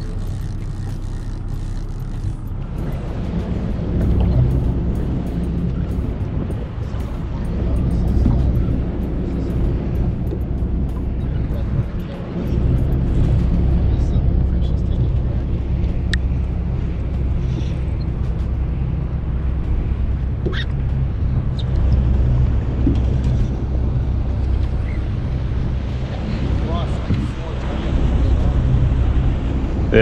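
Outboard motor of a Maritime Skiff running steadily with the boat under way, a constant low rumble that comes up about two and a half seconds in.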